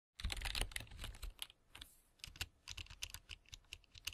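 Typing on a computer keyboard: a quick, irregular run of keystroke clicks that starts abruptly just after the start.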